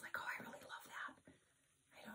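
A woman's voice speaking softly, close to a whisper, trailing off after about a second into a short near silence.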